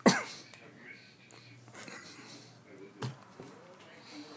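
A man's sudden, loud burst of breath through the mouth right at the start, with quieter breathing and mouth noises while he chews a jelly bean, and a second, smaller burst about three seconds in.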